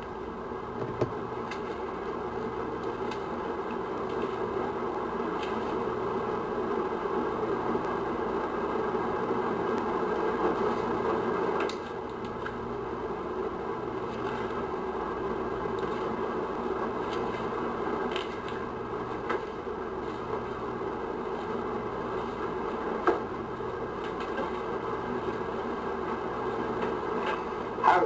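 Steady background noise with a faint low hum, broken by a few soft clicks now and then; it drops a little in level about twelve seconds in.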